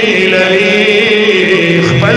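A man singing a Pashto naat unaccompanied, holding one long note with a wavering pitch. Other men's voices hold a low drone beneath it.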